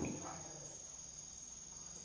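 A pause in speech: faint background hiss with a steady, unbroken high-pitched tone.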